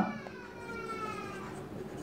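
A faint, drawn-out animal call with a clear pitch, falling slowly over about a second and a half.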